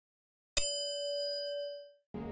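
A single bell ding sound effect for the notification-bell icon: struck once about half a second in, ringing on a clear steady tone with fainter higher overtones, and fading out after a little over a second.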